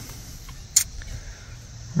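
Wind buffeting the microphone as a low, uneven rumble, with one short sharp click about three-quarters of a second in.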